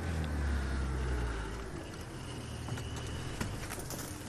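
Open safari game-drive vehicle's engine running as it drives off-road through the bush. The low engine note is strongest in the first second or so, then eases.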